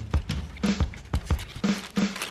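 Background music with a steady drum beat and a bass line.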